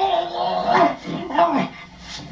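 A man making high, dog-like whimpering yelps in pain: three or four short cries, dropping away near the end.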